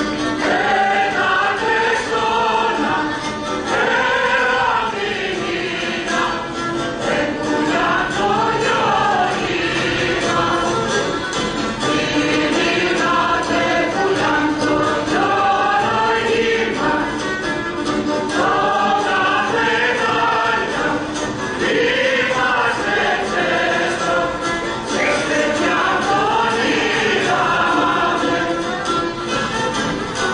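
Greek Macedonian folk dance music: a traditional song sung by a group of voices, the melody rising and falling in phrases a few seconds long.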